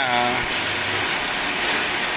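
Electric arc welding on a steel frame: a steady hissing noise from the arc.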